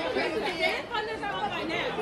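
Background chatter of many diners' voices in a busy restaurant dining room.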